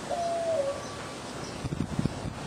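A dove cooing once: a single held note that drops in pitch at its end, lasting about half a second. A few soft low knocks follow near the end.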